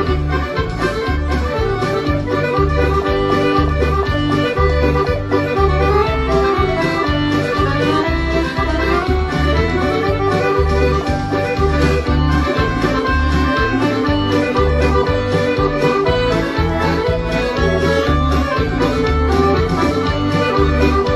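Brandoni chromatic button accordion playing a tune: sustained melody notes on the treble side over bass notes pulsing on a steady beat from the left-hand buttons.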